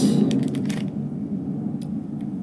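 Steady low rumble of an airplane flying overhead, with a few light clicks from handling the foil-wrapped wafer in the first second and once near the end.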